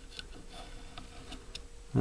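Faint, irregular small clicks and scrapes of a hand tool pushing Acraglas bedding compound down into the recesses of a rifle stock.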